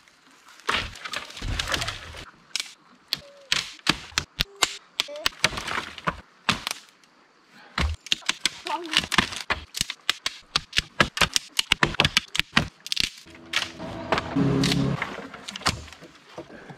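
Dry sticks and dead branches snapping and cracking as wood is broken up for firewood: a long, irregular run of sharp cracks that thins out near the end.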